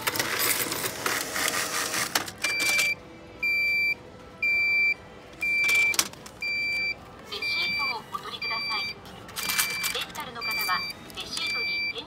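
Self-checkout cash unit (NEC FAL2 change dispenser) paying out change: a clattering, whirring burst of about two seconds, then a steady electronic beep repeating about once a second, prompting the customer to take the change. Coins rattle in the tray between the beeps.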